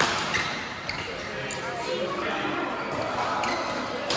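Badminton rackets striking the shuttlecock during a rally, the sharpest hit right at the start, with a few short squeaks of shoes on the court and background voices echoing through a large hall.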